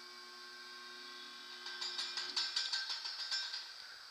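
Blower system starting up under a WEG SSW06 soft starter: a steady electrical hum, joined about halfway through by a louder mechanical clicking rattle.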